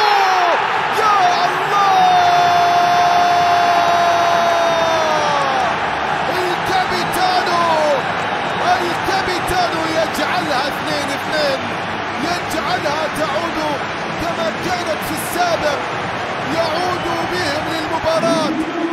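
Stadium crowd noise after a home goal, with a man's long drawn-out celebratory shout a couple of seconds in that is held for about three seconds and falls away at the end.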